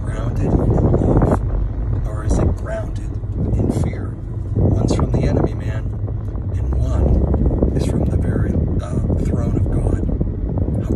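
A man talking inside a car cabin, over a steady low rumble of road and engine noise.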